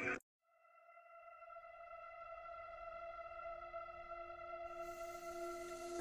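A single sustained drone note of eerie background music, with a stack of steady overtones, swelling in slowly from silence after an abrupt cut; a faint high hiss joins near the end.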